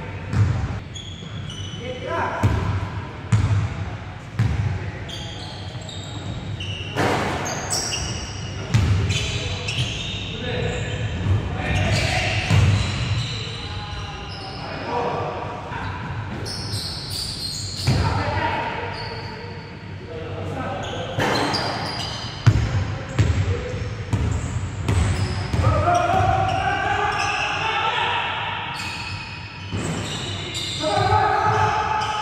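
A basketball bouncing and being dribbled on an indoor gym court in a pickup game, sharp thuds at uneven intervals, with players' voices calling out, louder near the end.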